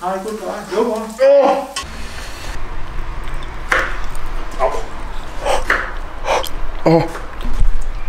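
A young man's voice making wordless sounds for about the first two seconds, then about five short, sharp breaths through an open mouth, reacting to the burn of very hot chili.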